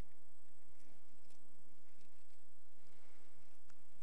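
Faint rustling of many Bible pages being turned by a congregation, with a few small clicks, over a steady low hum in the room.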